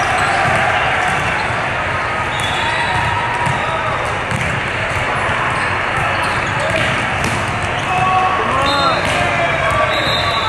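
Busy, echoing indoor volleyball tournament hall: many voices talking and calling out at once, sneakers squeaking on the court, and scattered thuds of balls being struck.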